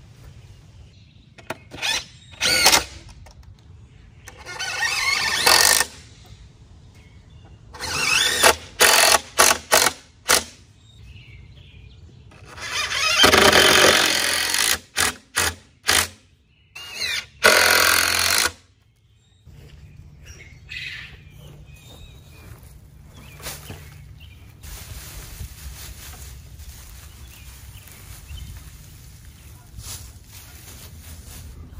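Cordless drill driving screws into pine 2x8 boards to join the corners of a raised-bed frame. It runs in a series of bursts, the longest about two and a half seconds, with quick short pulses as screws are run in and seated.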